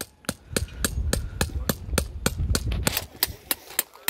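Hammer driving a tent peg into gravel ground, sharp blows repeating evenly about three to four times a second. Wind rumbles on the microphone under the blows.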